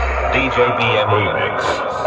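The dance track's heavy bass beat cuts off at the start, and a voice comes over the horn-loudspeaker DJ sound system.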